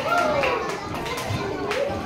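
Children's voices calling and chattering, high-pitched and rising and falling, with one sharp knock near the end.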